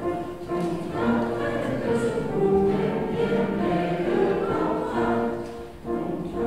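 Mixed men's and women's choir singing a German-language roundelay in several parts, with a short breath between phrases near the end.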